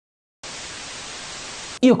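Static-hiss transition sound effect: an even burst of white-noise static that starts about half a second in, holds steady, and cuts off suddenly just before a man starts speaking.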